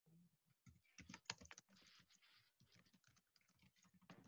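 Faint computer keyboard typing: a scattered run of soft key clicks, a little louder about a second in, over near silence.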